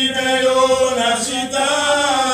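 A men's church choir singing a hymn together, with long held notes.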